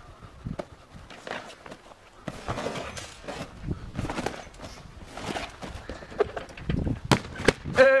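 Footsteps and bouncing on a garden trampoline, a run of irregular thuds and knocks, ending with a heavy thud and two sharp knocks a second before the end as the jumper falls beside the crash mats.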